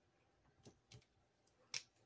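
Near silence with three faint, sharp clicks, the loudest near the end, as a marker is picked up and handled on a tabletop.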